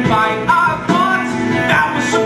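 A live musical-theatre number: a voice singing a melody over band accompaniment with held notes, continuing throughout.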